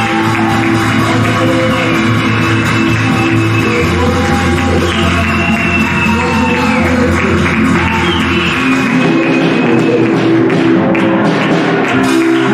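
Live church worship music played on a keyboard: sustained chords over a low bass note that shifts every few seconds.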